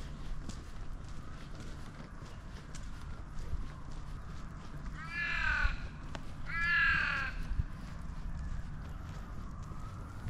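A crow calling twice, about five and six and a half seconds in: two drawn-out, downward-bending caws, the second a little longer and louder. The crow is an Australian raven, the common crow of Perth.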